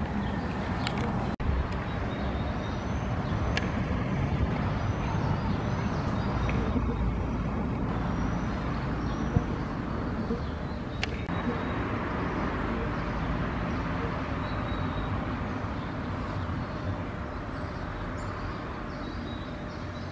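Steady outdoor background noise with a low rumble, like distant traffic. A few faint, short high chirps come in the first few seconds.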